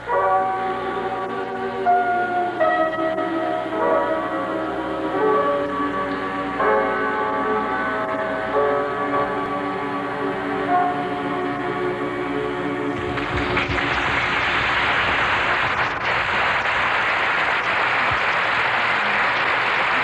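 A choir singing held, ringing chords for about thirteen seconds, then applause breaking out and continuing to the end.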